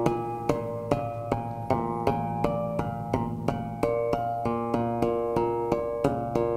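Tapped harmonics on a four-string electric bass: fingers bounce on the string along the fretboard over a fretted B-flat, about two or three sharp taps a second. Each tap rings out a bell-like harmonic at a different pitch as the taps move along the string. The low fretted note sustains underneath.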